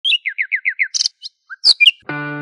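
Bird chirping: a quick run of about six chirps, each falling in pitch, then a few sharper, scattered chirps.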